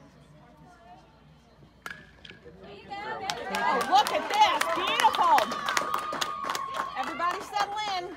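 A bat hits the ball with a single sharp crack about two seconds in. Then spectators cheer, shout and clap as the batter runs, loud for several seconds before dying down near the end.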